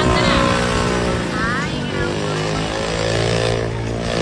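A motorcycle engine running loud and hard, its pitch dipping in the middle and climbing again near the end, with people's voices over it.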